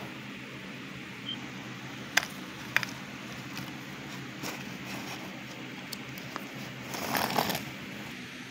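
Toy trains being handled and pushed over cardboard: two faint clicks a little after two seconds in and a brief scraping rustle near the end, over a low steady background.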